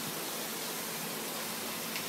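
A steady, even hiss with no distinct sounds in it.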